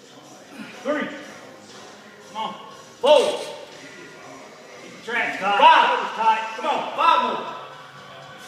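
A man grunting and groaning with effort in short, pitched bursts while he strains to drive a barbell squat back up late in a high-rep set. There are single grunts at about one, two and a half and three seconds in, and a louder run of them from about five to seven seconds.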